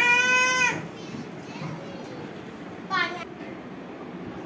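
A young child's high-pitched wordless call, held for under a second and falling slightly in pitch, followed by a shorter falling call about three seconds in.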